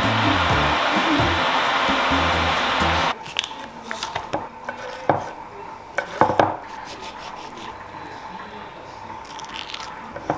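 Background music with a steady beat for about three seconds, cutting off suddenly. Then quieter kitchen sounds: a knife cutting into an avocado, with a few sharp knocks on a wooden chopping board.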